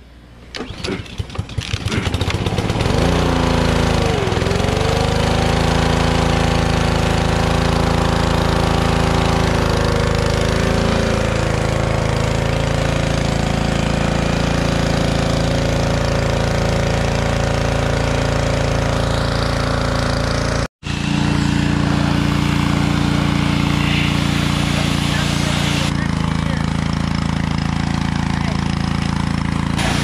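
Gas pressure washer's small engine catching right after a pull start: it sputters unevenly for about two seconds, then settles into a steady run. About four seconds in it briefly dips in pitch and recovers. It cuts out abruptly about 21 seconds in, then runs steadily again.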